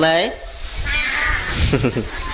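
A person's voice: a drawn-out vocal sound right at the start that bends in pitch, followed by a noisy murmur.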